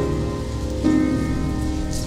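Keyboard instrument playing slow, sustained chords, the chord changing a little under a second in.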